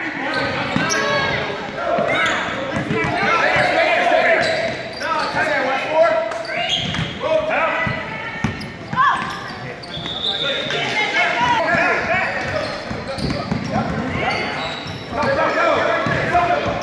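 Basketball being dribbled on a hardwood gym floor, a scatter of bounces, under continuous shouting and chatter from players and spectators in a large gym.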